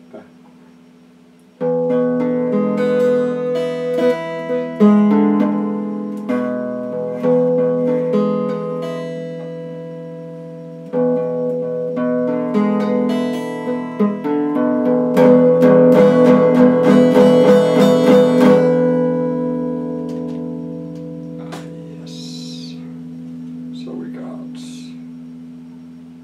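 Electric guitar picked note by note, starting about one and a half seconds in, with a short break near the middle. A fast run of picked notes follows, then a last note is left to ring and fade.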